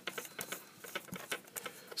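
Rapid, irregular little clicks and ticks of a plastic LED lamp housing being handled and worked off its base by hand.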